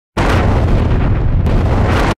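Loud, bass-heavy, explosion-like sustained noise that starts a moment in, with a sharp crack about one and a half seconds in. It is the intro sound effect for a production-company logo.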